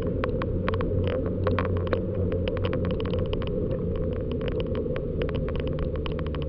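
Riding noise picked up by a bicycle-mounted camera rolling along an asphalt lane: a steady low rumble with many sharp, irregular rattling clicks, several a second, as the camera and its mount jolt over the road surface.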